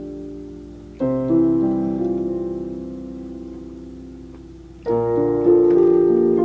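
Solo piano playing a slow melody. A chord struck about a second in rings and fades for nearly four seconds, then a new, louder chord with further notes comes in near the end.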